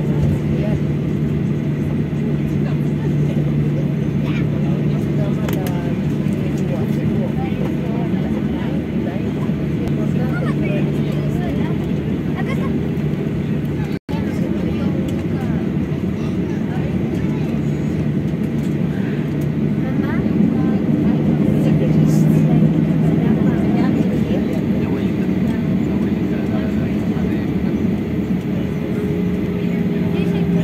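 Steady low drone of a jet airliner's engines and cabin as it taxis after landing, heard from inside the cabin, with passengers' voices murmuring over it.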